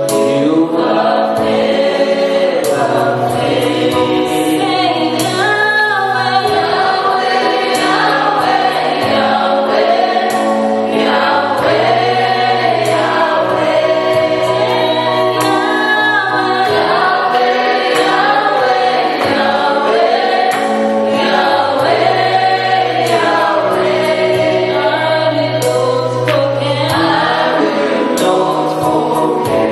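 Gospel song with a choir of voices singing over a steady bass line.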